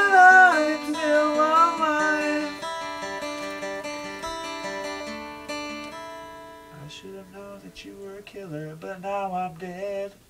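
Acoustic guitar playing, with a man's voice singing a long, wavering note over it at the start. The guitar then rings on more quietly, and a voice comes back faintly near the end.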